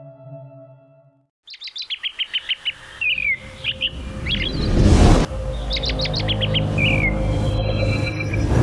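Soft sustained ambient music fades out about a second in. Birds then chirp in quick runs and short falling calls over a rising whoosh that swells to a peak around five seconds and cuts off sharply, leaving a low rumbling music bed.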